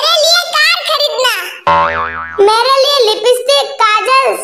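High-pitched cartoon character voices talking, interrupted about one and a half seconds in by a short wobbling 'boing' sound effect of well under a second before the voices resume.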